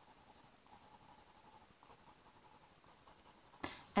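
Pencil drawing on workbook paper: faint, quick short strokes as a row of five small boxes is sketched.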